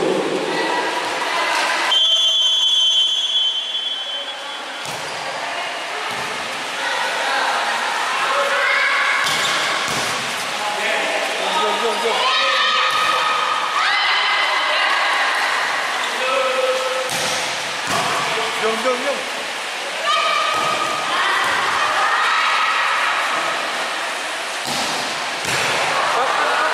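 Indoor volleyball rally: the ball being struck and hitting the hard court with sharp slaps and thuds at irregular moments, over constant shouting and calling from players and spectators in a reverberant hall. A referee's whistle sounds briefly about two seconds in.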